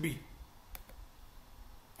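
Two quick computer mouse clicks close together, about three-quarters of a second in, over faint room tone.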